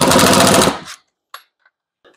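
Compact cordless impact driver hammering in a rapid rattle of impacts for just under a second as it runs a ground screw tight in a metal electrical box, then stopping; a faint click follows.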